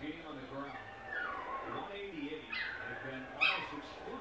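A dog whining: a few falling whimpers, then a sharper, louder yip near the end.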